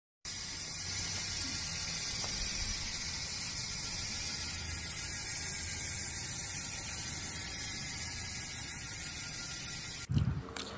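A steady hiss, brightest in the high range, that starts abruptly just after the beginning and holds unchanged.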